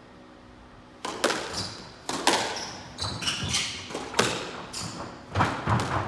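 A squash rally gets going about a second in: sharp cracks of the racket striking the ball and the ball hitting the walls and wooden floor, echoing in the enclosed court. Short high shoe squeaks sound between the shots.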